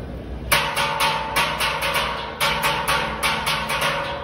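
Steel pans struck in quick runs of ringing notes, starting suddenly about half a second in, with a short pause near the two-second mark before the notes resume.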